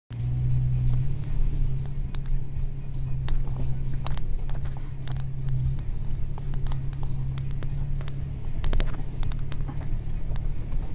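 A Toyota 4x4's engine running steady and low under load, heard from inside the cab as it climbs a steep rocky obstacle, with scattered sharp clicks and knocks throughout.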